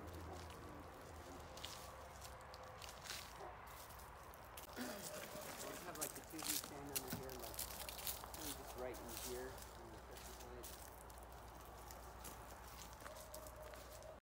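Faint, indistinct voices in the distance, strongest from about five seconds in, with scattered clicks and light crunches of movement on gravel.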